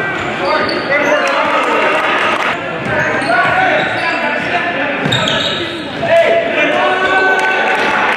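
Live game sound in a gym: a basketball dribbled on a hardwood court, with the voices of players and spectators echoing in the hall.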